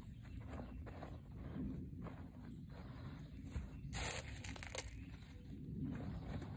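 Hand trowel scraping and crunching into loose garden soil, with gloved hands working the dirt; two short, louder scrapes come about four and five seconds in.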